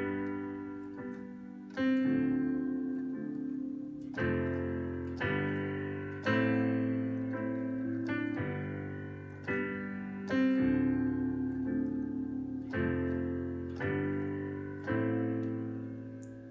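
Digital keyboard piano playing an R&B chord progression with both hands: right-hand chords (A minor, G major, D minor 7, F major, G major, back to A minor) over single bass root notes in the left hand. Each chord is struck and left to ring and fade, with a new one every one to two seconds.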